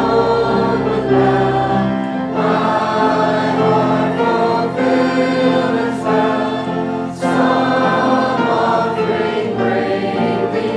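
Church choir singing a gospel hymn with keyboard accompaniment. A held bass note underneath drops out about two seconds in and comes back near the end.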